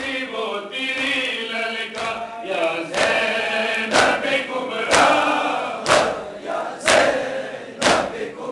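A crowd of men chanting a noha together. From about three seconds in, chest-beating (matam) joins in unison, with sharp slaps about once a second.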